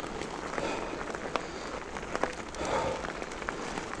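Specialized enduro mountain bike rolling along a leaf-covered forest dirt track: steady tyre noise with scattered sharp clicks and rattles.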